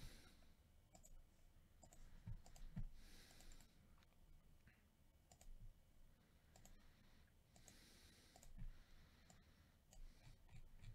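Faint, scattered clicks of a computer mouse and keyboard over near silence.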